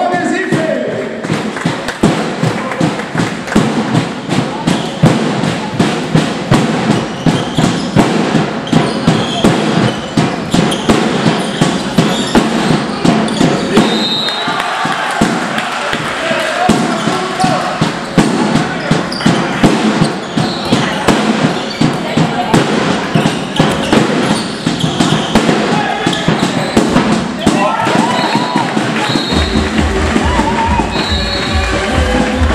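Sports-hall din at a handball match: voices and spectators, over a dense run of sharp knocks and thuds that echo in the hall.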